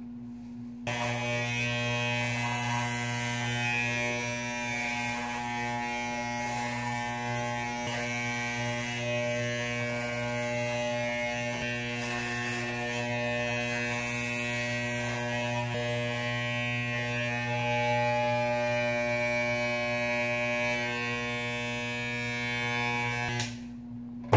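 Corded electric hair clippers with a grade 4 guard buzzing steadily as they cut through hair. They switch on about a second in and switch off shortly before the end.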